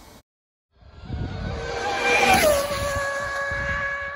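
End-card sound effect after a short gap of silence: a rush of noise swells up with a high whine that drops in pitch about halfway through, then holds one steady tone.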